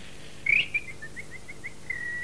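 High, bird-like chirping whistle: a chirp, then a quick run of short rising notes at about six a second, then a longer held note near the end.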